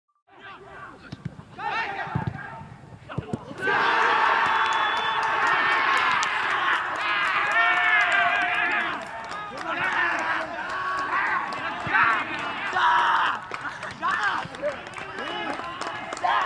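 A few sharp thuds of a football being played, then from about four seconds in a group of young men shouting and cheering loudly together to celebrate a goal.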